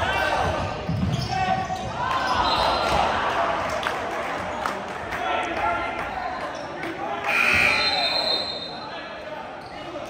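Basketball bouncing on a hardwood gym floor during live play, under shouting players and a murmuring crowd, with echo from the large gym. A brief shrill sound about seven and a half seconds in is the loudest moment.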